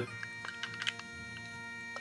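Soft background music with steady held notes, with a few light clicks in the first second from a small toy locomotive being handled between the fingers.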